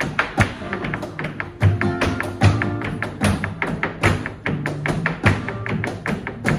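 Flamenco guitar playing tarantos, with rapid, irregular sharp percussive strikes over it, handclaps (palmas) among them.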